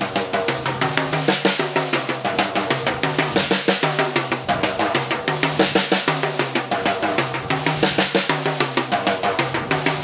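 Drum kit played with sticks in a fast, even run of single strokes on the snare and toms, the drum pitch stepping between drums in a repeating practice pattern.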